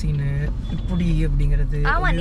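A person talking inside a moving car's cabin, over the steady low rumble of the car on the road.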